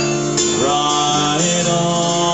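A man singing a folk song live, accompanying himself on acoustic guitar. He holds long notes, sliding up to a higher note about half a second in and again about a second and a half in.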